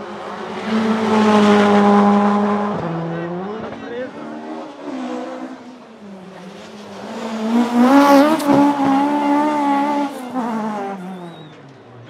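Rally car engines revving hard on a special stage: a first pass peaks about a second in, with a gear change near three seconds, then a Ford Escort Mk2 rally car revs up and holds high revs through a drift around eight seconds, the loudest moment.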